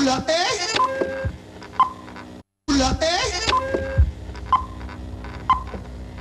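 Playback of an old videotape: a voice and music with wavering pitch. The sound cuts out to silence for a moment, then the same short stretch plays again.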